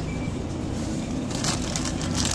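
Plastic bag of pre-cut salad crinkling as it is grabbed and handled, starting about a second and a half in, over a steady low background hum.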